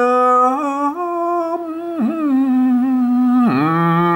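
A man singing Northern Thai khao jo'i verse unaccompanied, drawing out one syllable in a long held note with slow bends in pitch, a brief dip about two seconds in and a slide down near the end.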